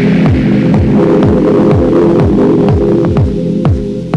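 Progressive techno from a cassette recording of a DJ set: a steady four-on-the-floor kick drum, each beat a short falling thud about twice a second, under a held droning chord with light hi-hat ticks.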